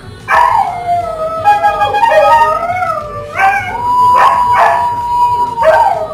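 A dog howling loudly in long, wavering notes that glide up and down, settling into one long steady held note in the second half.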